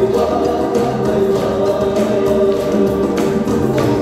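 Ecuadorian band music with several voices singing together over a bass line that steps between notes.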